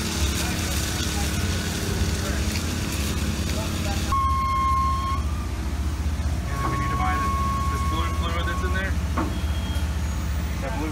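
Propane-fuelled Hyster forklift engine running steadily as it carries a heavy machine, with a steady high warning tone sounding for about a second around the middle and again for a couple of seconds later on. Faint voices are heard in the second half.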